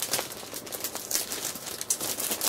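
Packaging crinkling and rustling in irregular bursts as a 12-by-12 scrapbook paper stack is unwrapped and handled.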